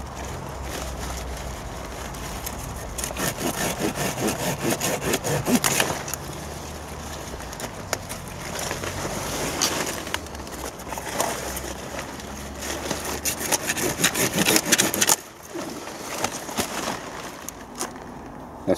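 Cauliflowers being harvested by hand: large leaves rustling and brushing, and the thick stalks cut with a knife, in a busy run of crisp rasps and snaps.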